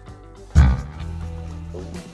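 Background music with steady sustained tones. A deep bass note comes in suddenly about half a second in and holds.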